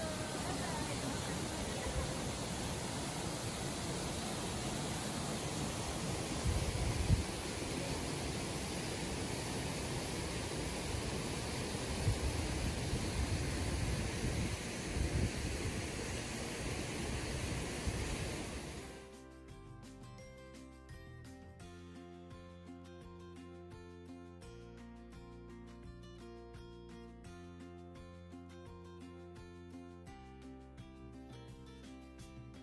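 Steady rushing hiss of water from Winnewissa Falls, with a few low thumps. About two-thirds of the way through, it cuts abruptly to quieter background music with a steady beat.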